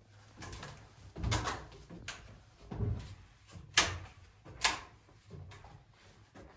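Footsteps and knocks of a person climbing a wooden ladder, spaced irregularly, with two sharp knocks a little past halfway through.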